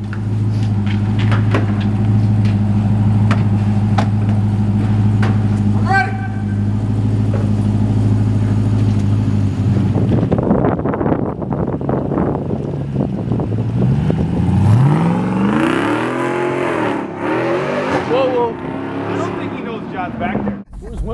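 Jeep Gladiator pickup's engine idling steadily, then revving up and down repeatedly from about two-thirds of the way in as the truck pulls away.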